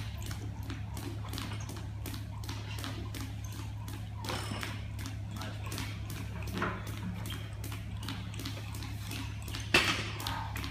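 Barbell with bumper plates set down on a wooden lifting platform near the end, a single loud thud, after a few lighter knocks of the bar and plates during snatch reps. A steady low hum runs underneath.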